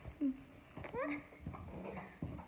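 Yellow Labrador retriever whining in short calls: a brief low whine just after the start, then a whine that rises in pitch about a second in, with a few soft thumps of movement between them.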